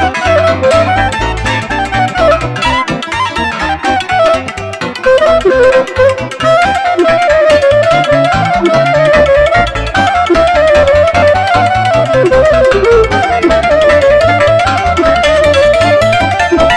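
Romanian lăutărească band music played live: a clarinet leads with a winding, ornamented melody over cimbalom, accordion and keyboard accompaniment with a pulsing bass.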